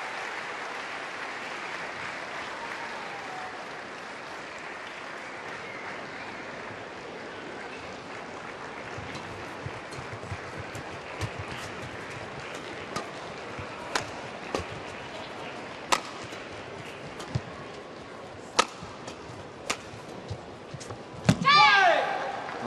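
Badminton rally: rackets striking a shuttlecock back and forth, about a dozen sharp strikes roughly a second apart over a murmuring arena crowd, ending near the end in a loud shout as the point is won.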